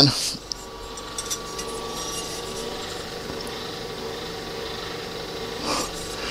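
Light handling noise as a plastic model-engine Pitts muffler is held and rubbed against the balsa fuselage side during a test fit, over a steady shop hum.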